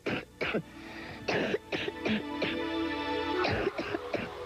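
A person coughing repeatedly, in short harsh bursts one after another, over background music.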